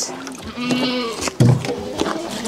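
Goats bleating: two drawn-out bleats, with a short low thump between them.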